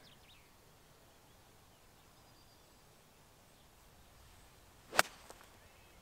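An 8-iron striking a golf ball: one sharp click about five seconds in, after a few seconds of quiet as the golfer sets up over the ball.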